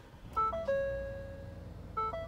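Ford F-150 dashboard chime: a descending run of four electronic tones, the last held and fading, about half a second in and again at the very end. Beneath it the low, steady rumble of the 5.0-litre V8, just started with the push button and running at a fast idle.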